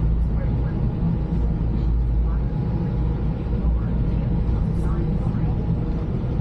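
Steady low drone of a fast passenger ferry's engines and hull heard inside the seating cabin while under way, with faint voices over it.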